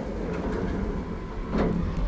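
Old Teev traction elevator car travelling in its shaft: a steady low rumble heard from inside the cab, with a brief knock about a second and a half in.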